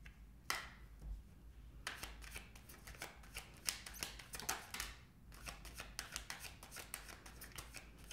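A large deck of tarot cards shuffled by hand, a dense, quick run of soft flicks and slaps from about two seconds in, after a single sharp click near the start, with a card laid down on a wooden table.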